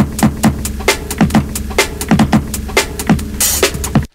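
A sampled drum break played back on an E-mu SP-1200 sampler, with the machine's gritty, crunchy sound: a busy pattern of kicks, snares and hi-hats with a jungle feel. It stops abruptly at the very end.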